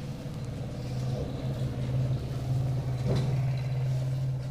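A steady low mechanical hum runs through, with faint scratching of a marker on a whiteboard and a brief knock about three seconds in.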